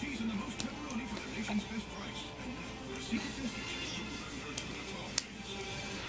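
A small metal padlock and key on a leather handbag clicking a few times as they are handled, the sharpest click about five seconds in, over faint background music and voices.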